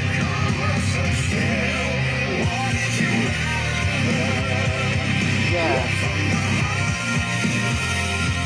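Rock song with vocals playing from a Marshall Emberton portable Bluetooth speaker, heard continuously.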